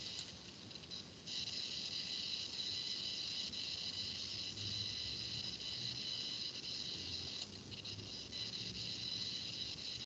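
Steady high-pitched hiss of background recording noise, stepping up slightly about a second in, with a faint low hum and a few faint clicks.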